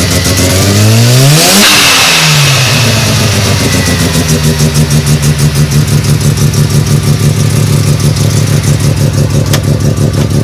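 Mazda FD RX-7's turbocharged 13B rotary engine revved once, climbing and falling back about two seconds in, then idling with a fast, even pulse.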